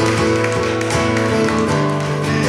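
Acoustic guitar strummed in a live song intro, with sharp taps keeping time over it.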